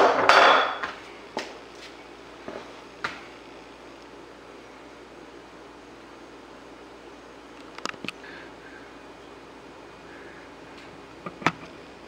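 Steel hand tools and a diesel fuel injector clattering against a cast-iron bench vise and workbench as they are lifted out and set down. This is a brief burst in the first second, followed by a few sharp single metal clicks and knocks over steady low room hum.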